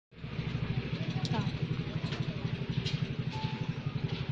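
An engine running steadily with a rapid, even pulse, about ten beats a second, with a few short chirps over it.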